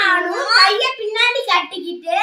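A child speaking in a high voice with hardly a pause, words not picked up by the recogniser.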